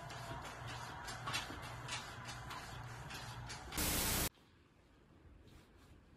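Light ticking over faint background sound, then a loud half-second burst of static hiss about four seconds in that cuts off sharply into quiet room tone.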